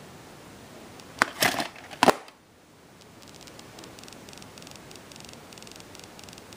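Plastic clicks and a scrape from a VHS cassette being handled in its hard plastic case: a sharp click about a second in, a short rustling scrape, then a louder click about two seconds in.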